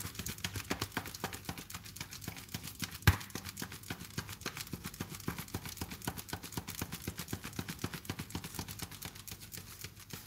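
A piece of card waved fast by hand to fan and cool a freshly baked hazelnut meringue sheet, flapping in an even rhythm of several strokes a second, with one louder knock about three seconds in.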